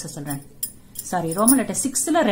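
A woman's voice speaking, with a short pause about half a second in.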